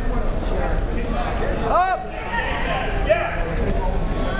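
A voice shouting once, about two seconds in, over steady crowd chatter in a gym.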